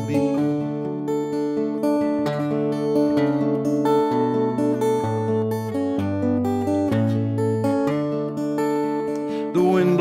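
Solo steel-string acoustic guitar played in an instrumental passage, chords changing about once a second. A voice starts singing again just before the end.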